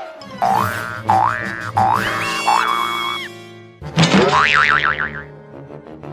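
Cartoon underscore music with comic sound effects: three quick rising swoops in the first two seconds, a held chord, then a loud hit about four seconds in followed by a fast wobbling, warbling tone.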